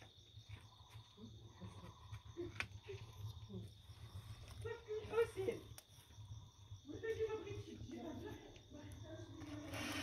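Crickets trilling steadily as one unbroken high note. A muffled voice comes in about halfway through and again through the last few seconds, with a few faint clicks and a low hum underneath.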